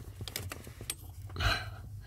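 Small clicks and taps of hands handling a plastic clutch position sensor and its plug under a car's pedal box, with a louder brief handling noise about a second and a half in.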